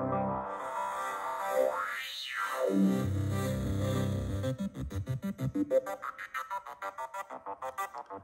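Helm software synthesizer sounding a sustained note, its brightness swept down and back up about two seconds in as the filter cutoff is moved, then short repeated notes several times a second in the second half.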